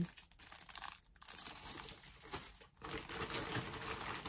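Plastic packaging crinkling and rustling as party goods are handled and set down, a faint, irregular crackle.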